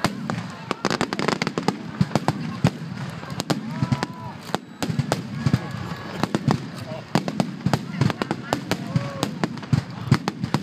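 Fireworks display: a rapid, irregular run of bangs and crackles from exploding shells, several a second, with people's voices from the watching crowd.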